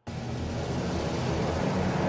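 A sudden, loud, noisy rumble with a low hum beneath it, starting abruptly and holding steady.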